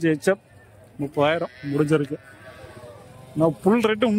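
Livestock bleating at a cattle market: several calls with a wavering pitch, about a second in, around two seconds, and again near the end.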